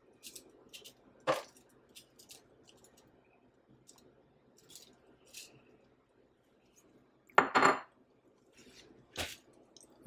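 Crockery handling: a bowl of seasoning tipped and tapped over shrimp in a glass bowl, with scattered light clicks and a few sharper knocks of bowls against each other or the counter, one about a second in, the loudest at about seven and a half seconds, and another just after nine seconds.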